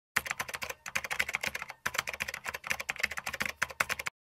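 Computer keyboard typing sound effect for an on-screen title: rapid, even keystroke clicks, with two brief pauses in the first two seconds.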